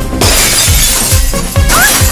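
Action film background score with a heavy pounding beat, and a loud crash with a shattering burst of noise about a quarter second in as something is smashed in the fight.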